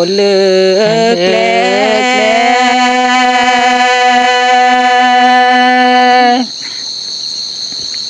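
Unaccompanied Karen (Pga K'nyau) tha poem chanting: a solo voice glides through a few bending notes, then holds one long note for about four seconds and stops about six and a half seconds in. A steady high-pitched whine sounds underneath.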